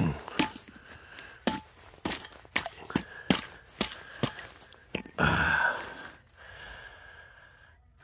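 Glass jar knocking on and breaking through thin pond ice: a run of sharp cracks and clinks from ice pieces, then a louder noisy rush about five seconds in.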